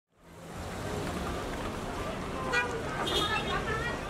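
Street ambience fading in: a steady bed of traffic noise with faint voices in the second half.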